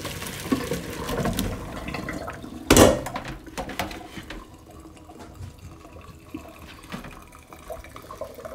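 Hot water and boiled cauliflower florets poured from a pot into a plastic colander in a stainless steel sink, the water splashing and draining away. About three seconds in comes one loud thump, then the flow dies down to a quieter trickle and drips.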